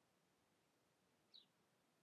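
Near silence: room tone, with one faint, very short high-pitched chirp about a second and a half in.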